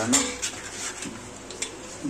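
Metal spoon scraping and clinking against a steel mesh sieve as cooked tomato pulp is pressed through it, with a sharp click about one and a half seconds in.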